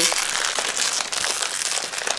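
A shiny blind-bag packet holding a collectible wand being handled and opened, its wrapper crinkling in a steady run of small rustles and crackles.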